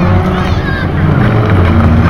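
Banger cars' engines running loud and steady around the oval during a destruction derby.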